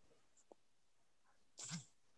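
Near silence on a video-call line, with a faint tick about half a second in and a short, breathy puff near the end.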